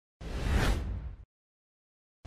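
A whoosh sound effect for a video-intro transition: a rushing hiss over a deep low rumble. It starts about a fifth of a second in, swells, and cuts off abruptly after about a second.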